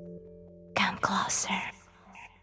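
A held musical chord fades out, then about three-quarters of a second in a breathy whispered vocal comes in for about a second as the song ends.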